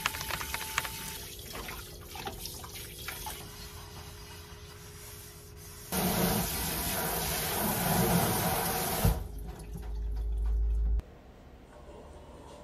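Kitchen faucet running into a stainless-steel sink during dishwashing, with a few light clicks in the first few seconds. About six seconds in, the pull-out sprayer's stream gets much louder as it hits the sink, then it cuts off suddenly shortly before the end.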